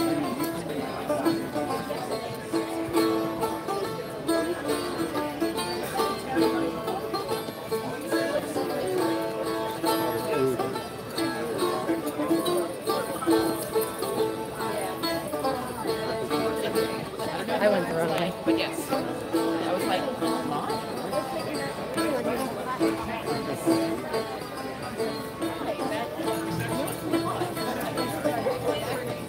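A plucked string instrument playing a tune for the dancers, with a crowd talking in the background.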